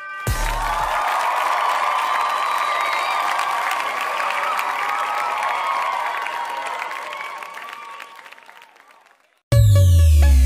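A crowd cheering and applauding, steady for several seconds and then fading away. Loud electronic music with a heavy bass beat cuts in just before the end.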